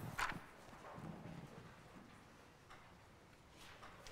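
Faint handling sounds of a book at the pulpit microphone: pages being turned, with a light knock just after the start and a few softer ticks near the end.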